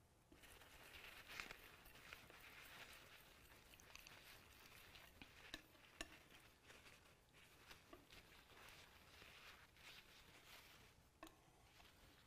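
Faint scraping and a few soft ticks of a palette knife mixing a pile of oil paint on a palette.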